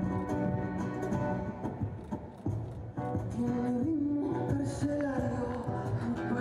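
Live concert music from a band playing on stage, with a voice singing a melody that comes in about three seconds in.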